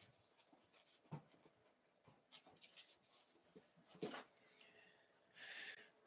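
Near silence with faint handling noises: a couple of soft knocks and light rustles of 45 rpm records in paper sleeves, and a brief sliding rustle near the end as a stack is picked up.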